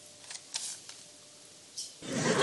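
A sheet of paper rustling as it is handled: a few short, crisp rustles, the longest about half a second in and another near the end.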